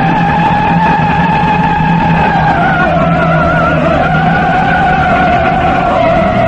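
A soprano holds one long high note with vibrato over a sustained orchestral chord; the note slides up into place at the start, sags slightly in pitch about halfway through, then rises a little again.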